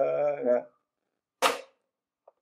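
A man singing a line of a Yakshagana verse holds its last note until it breaks off. About a second and a half in comes a single sharp hand slap.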